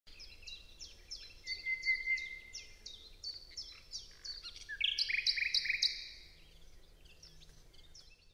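Birds chirping: a steady run of quick, high, down-slurred chirps about three a second, with a short held whistle under them, then a faster, brighter trill about five seconds in that fades away toward the end.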